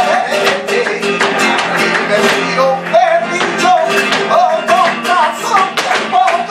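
Live flamenco por alegrías: acoustic flamenco guitar playing, with sharp, rapid hand-clapping (palmas) and a male singer's wavering voice over it.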